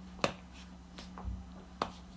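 A few sharp, light clicks at irregular intervals, the loudest about a quarter second in and another just before the end, over a faint steady low hum.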